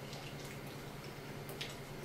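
Faint chewing of a bite of a cheese-stuffed taco shell: a few soft, wet mouth clicks, the clearest about a second and a half in, over a steady low hum.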